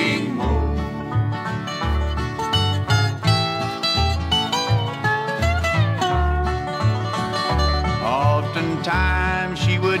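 Instrumental break of a 1971 bluegrass gospel recording: banjo and guitar picking over bass notes that fall steadily about twice a second, with a melody line that bends in pitch.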